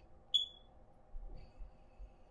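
Quiet room tone broken by one short, high-pitched chirp about a third of a second in, followed by a few faint low bumps.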